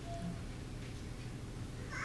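Pause between spoken phrases: quiet room tone with a low steady hum, and a faint short squeak near the start.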